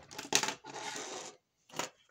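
Paper being handled at a stapler on a wooden desk: a few sharp clicks and knocks early on and another near the end, with about a second of paper rustling and sliding between them.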